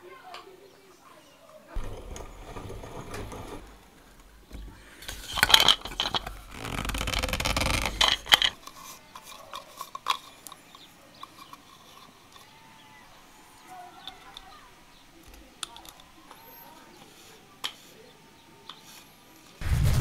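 Plastic parts of a toilet cistern valve being handled and fitted together, with sharp clicks and scraping, and a few longer rushes of noise in the first half.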